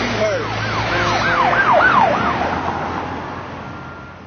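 Emergency vehicle siren in a fast yelp, its pitch sweeping up and down several times in quick succession over steady street noise, then fading out.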